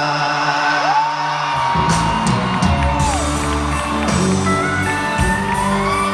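Live country band music in an arena, with held electric guitar notes and the drums and bass coming in about a second and a half in, and the crowd whooping.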